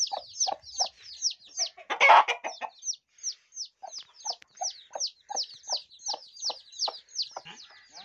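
Aseel chicks peeping without pause, high falling peeps several a second, over a hen's low, regular clucks. A louder, harsher burst of sound comes about two seconds in.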